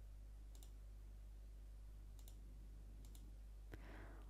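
Near silence with a low steady hum and a few faint computer mouse clicks, the clearest one near the end.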